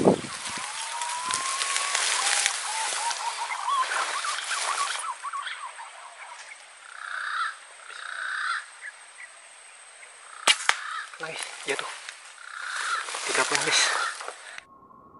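Birds calling in the tree canopy: short whistled calls over a hissy forest background, with a single sharp click about ten and a half seconds in.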